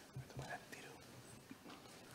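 Faint murmured voices and low whispering in a quiet hall, with a couple of soft knocks in the first half second.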